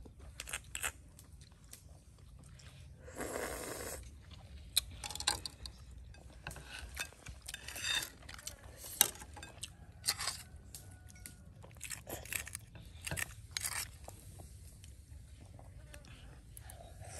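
People eating grilled scallops from the shell: chewing and mouth noises with scattered short clicks of metal spoons against the shells.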